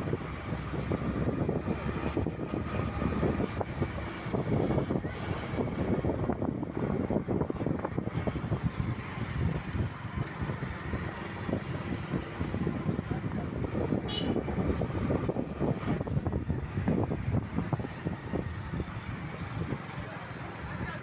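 Roadside traffic ambience: trucks and buses running at idle in a stalled queue, with wind buffeting the phone microphone and people's voices in the background.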